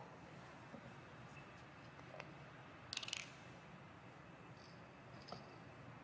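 Near silence with a few light clicks and one short hiss about three seconds in, from a bottle-top solvent dispenser being worked on a bottle of acetonitrile.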